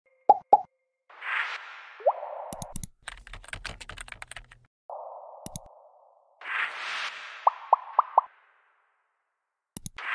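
Animated-intro sound effects: two quick pops, a whoosh, a fast run of keyboard-typing clicks, further whooshes, and four quick pops in a row near the end.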